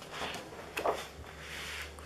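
Large sheets of 170 g double-sided scrapbooking paper sliding and rustling as they are handled and swapped, in two sweeps with a brief tap between them.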